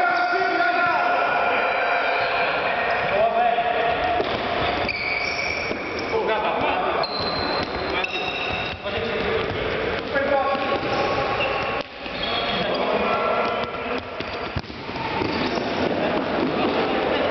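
Futsal ball being kicked and bouncing on a sports-hall floor at irregular moments, amid players' shouts in a large hall.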